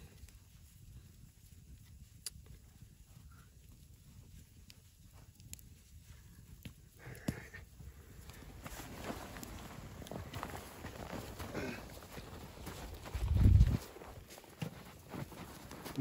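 Cotton bandana and cord rustling as they are handled and a knot is tied. It is quiet at first and gets busier about halfway through. Near the end there is one loud, low thump.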